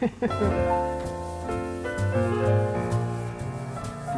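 Piano music with held notes changing in steps.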